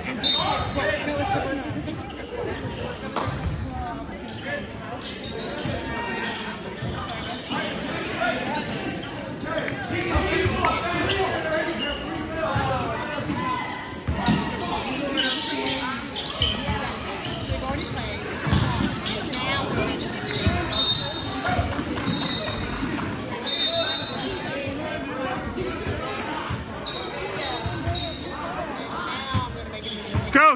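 Basketball dribbling and bouncing on a hardwood gym floor, repeated thuds echoing in a large hall, under a steady babble of players' and spectators' voices.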